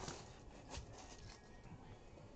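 Quiet handling sounds: a few faint clicks and rustles of plastic top-loader card holders being handled on a table.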